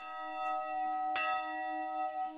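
A bell tone struck twice, about a second apart, each stroke ringing on steadily with several overtones.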